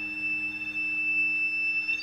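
Soundtrack music: one high, steady pure tone held over a soft low drone, with no rhythm or melody moving.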